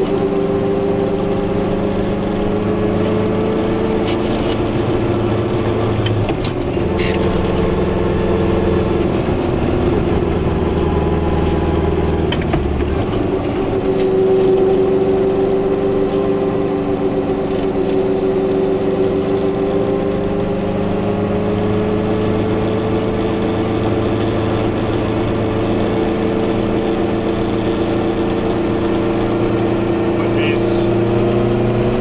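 Goggomobil's small air-cooled two-stroke twin engine running steadily while the car drives along. Its note shifts about a third of the way in and again near halfway, then holds steady.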